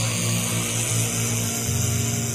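Lo-fi black metal recording: a dense wall of distorted guitar noise over a low bass note that pulses on and off.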